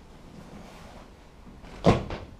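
A dog-training clicker pressed once near the end: a sharp click, then a fainter second click on release a moment later, over quiet room tone. The click marks the dog's correct behaviour for reward.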